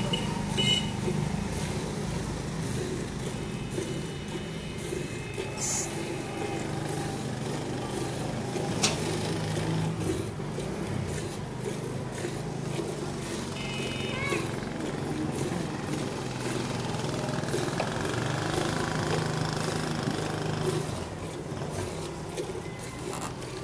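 Hand-milking of a buffalo into a steel bucket over a steady low drone like a running engine, with a few brief high tones at the start, about 3 to 5 seconds in and about 14 seconds in.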